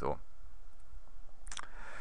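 A computer mouse click, short and sharp, over a faint low hum from the recording setup.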